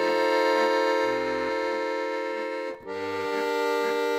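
Button accordion playing between sung lines: a held chord over pulsing bass notes, breaking off briefly near three seconds in before moving to a new chord.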